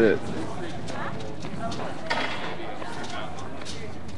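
Steady outdoor street noise with faint, distant voices and a couple of sharp knocks, one about two seconds in and one near the end.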